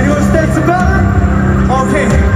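Live K-pop concert sound recorded from the crowd: loud amplified music with heavy bass, and a voice over the arena sound system.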